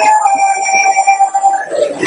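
A woman's voice, amplified through a handheld microphone, holding one long, high, steady note that breaks off shortly before the end.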